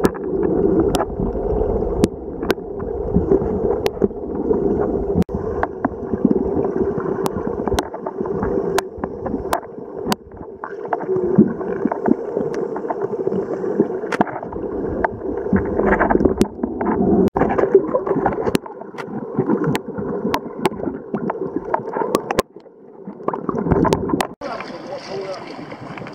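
Muffled underwater sound picked up by a camera in a waterproof housing while snorkeling: water moving and gurgling, with many short sharp clicks scattered throughout. Near the end the camera breaks the surface and the sound turns brighter and open, with water and air noise.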